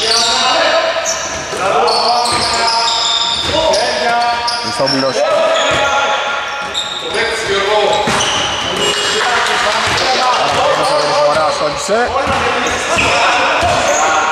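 Basketball game sounds in a large gym: the ball bouncing on the hardwood floor, many short, high-pitched sneaker squeaks, and players' voices calling out.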